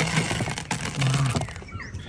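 Small seeds pouring out of a plastic bottle and pattering onto a flat trap lid: a dense run of tiny ticks that fades out about one and a half seconds in.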